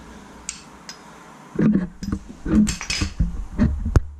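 Metal tools and parts being handled: after a quiet stretch with one small click, a series of short metallic clinks and knocks starts about a second and a half in, ending in one sharp hit.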